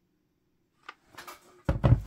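Handling noise on a craft table: near silence, then a faint click about a second in, and a dull thump near the end as items are picked up or set down.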